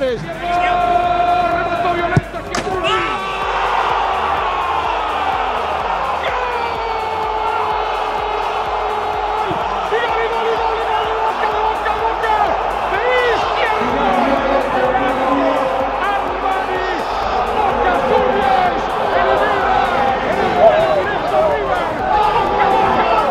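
A held musical tone cut off by a sharp slam about two seconds in, then a jumble of men's voices shouting and celebrating over background music.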